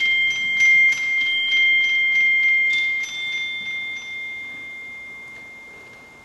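High metal percussion struck repeatedly, about three strokes a second, ringing on two high pitches; the upper pitch steps up a little near the middle. The strokes stop after about four seconds and the ringing dies away.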